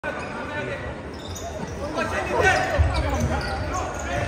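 Futsal ball thudding as it is kicked and bounces on an indoor court floor, the knocks echoing in a large sports hall, heavier from near the middle on.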